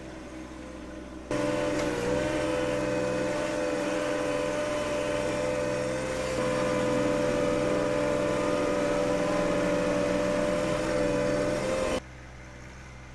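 John Deere 1025R compact tractor's three-cylinder diesel engine running steadily under load while it pushes wet snow with its front blade, with a steady droning tone. The sound jumps louder about a second in.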